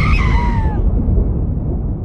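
Trailer sound-design boom dying away as a deep low rumble, with high sliding screech-like tones fading out in the first second.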